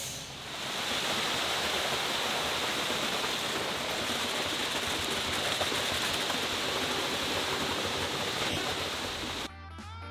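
Wet concrete pouring down a ready-mix truck's chute into a rebar-filled form: a steady rushing hiss. It cuts off suddenly near the end, where guitar music comes in.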